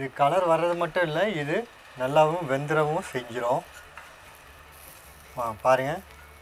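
A man talking in three short spells, with a faint sizzle in the pauses from halved garlic and green chilli frying in a pan.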